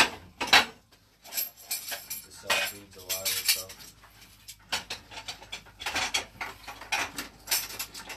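Irregular metallic clinks and clatter of fittings and tools being handled at a Quik-Shot CIPP inversion unit while the calibration tube is being set up.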